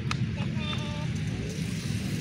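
A steady low rumble with a short high-pitched call about three-quarters of a second in.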